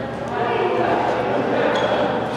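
Indistinct voices in a large indoor sports hall, with a few faint light knocks.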